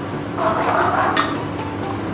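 Steel ladle stirring a watery leafy curry in a metal pot, with a light clink of the ladle against the pot about a second in.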